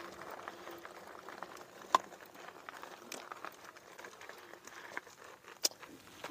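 Faint crunching and crackle of footsteps and fat tyres on loose gravel as the e-bike is brought up, with scattered light clicks; two sharper clicks stand out, about two seconds in and near the end.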